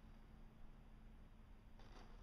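Near silence: a faint, steady low hum, with a brief soft rustle near the end.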